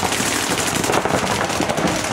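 Several paintball markers firing rapid streams of shots at once, a dense, overlapping rattle of pops with no pause.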